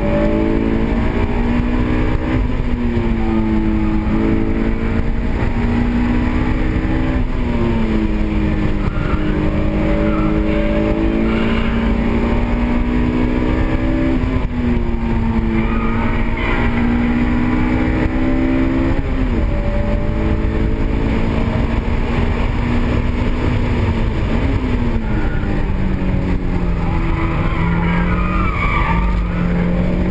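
Honda S2000's four-cylinder engine heard from inside the cabin under hard track driving, its pitch climbing steadily and then dropping sharply at each shift or lift, roughly every four to five seconds. Brief wavering tyre squeal near the end.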